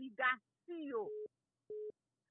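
A few words of a man's voice, then two short beeps of a single steady telephone tone about half a second apart, like a busy signal on a phone line.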